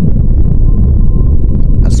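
Space-sound audio clip presented as NASA's recording of the Milky Way galaxy: a loud, deep, steady rumbling drone with a faint high tone held above it.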